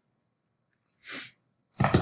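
A man's short sniff about a second in, with near silence around it, then his voice starting near the end.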